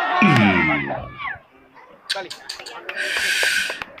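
Several voices crying out at once, overlapping. Then come a few sharp knocks and a short hissing burst near the end.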